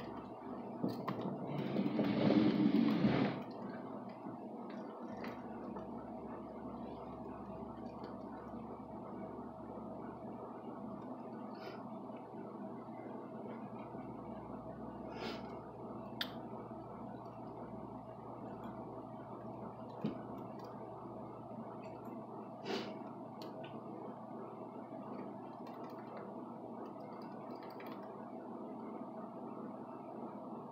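Quiet room tone with a steady low hum, broken by a brief noisy rustle about two seconds in and a few faint sharp ticks later on.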